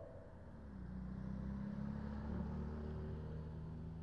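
Car driving past through the intersection: engine and tyre noise swell about a second in and ease off toward the end, over a steady low traffic hum.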